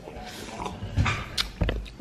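Someone drinking orange juice from a plastic cup: a few short gulping and swallowing sounds with small bumps of the cup.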